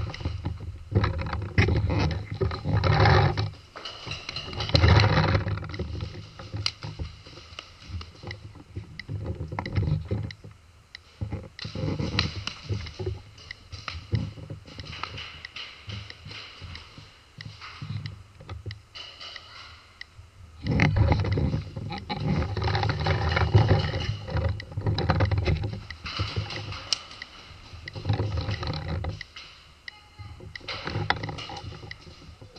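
Paintball-game action heard from a camera mounted on the gun: loud rushing, rattling bursts of handling and movement noise lasting a few seconds each, with a quieter middle stretch full of short sharp pops from paintball markers firing.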